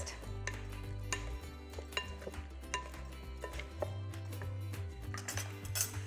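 Spoon clicking and scraping against a glass mixing bowl as chopped cauliflower and carrots are stirred, with scattered sharp clinks, over background music with a steady bass line.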